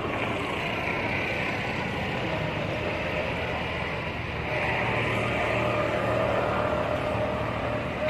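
A motor vehicle's engine running steadily nearby, growing louder for a few seconds from about halfway through.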